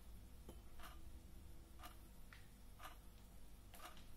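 Quartz wall clock ticking, one faint tick about every second.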